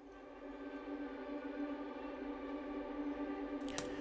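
Orchestral strings from the Spitfire Albion V Tundra sample library played col legno tratto, bowed with the wooden back of the bow. One quiet, thin held note slowly swells in loudness.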